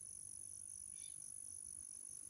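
Crickets trilling faintly: a steady high note with a quick, evenly pulsing note below it.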